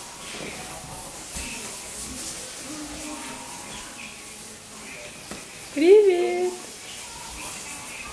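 A young child's short voiced call about six seconds in, rising and then holding its pitch for about half a second. Around it are faint room hiss and a few soft vocal sounds.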